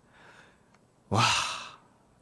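A man's tired sigh: a faint breath in, then about a second in a loud, breathy, voiced exhale ('wah') that fades away.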